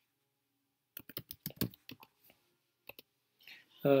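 Typing on a computer keyboard: a quick run of about eight keystrokes about a second in, then one more click near the three-second mark.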